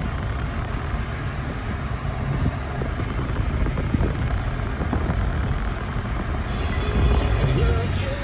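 Steady low rumble of a running car and passing traffic, heard from inside the cabin of a 2019 Nissan Altima. Near the end the car radio's music comes back in faintly.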